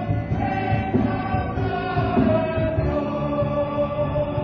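A musical-theatre chorus chanting and singing in unison over a full pit orchestra, with a steady pulsing beat in the bass.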